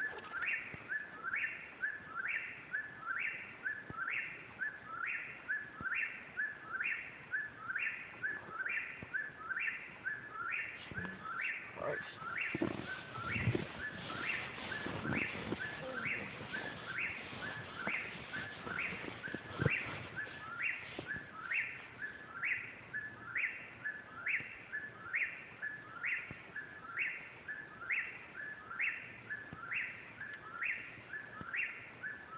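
Eastern whip-poor-will singing its repeated 'whip-poor-will' call, about three calls every two seconds without a break. Low rustling and a few thumps are heard in the middle stretch.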